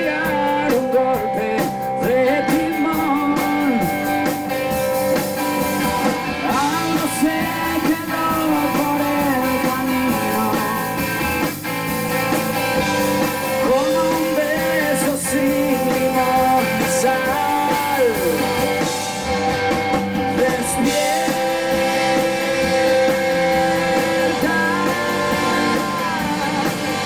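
Live rock band playing: electric guitar, bass guitar and drum kit, loud and steady, with a male voice singing over them.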